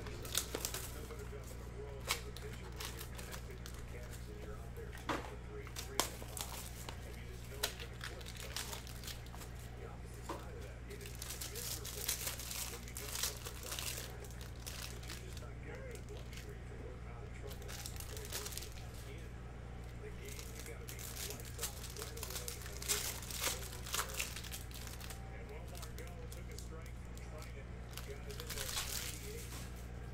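Clear plastic wrapper of a trading-card pack being torn open and crumpled, crinkling in several bunches, with a few sharp ticks as the cards are handled. A steady low hum runs underneath.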